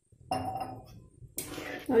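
Metal spatula striking the aluminium kadhai, giving a clink that rings and fades over about a second. Then it begins stirring the watery masala mix, scraping the pan.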